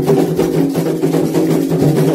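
Candomblé atabaque hand drums played in a fast, dense, unbroken rhythm: the toque for an orixá's dance in the rum for Iemanjá.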